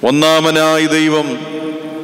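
A man's voice chanting, starting abruptly and holding long notes that glide slowly in pitch, the first lasting well over a second.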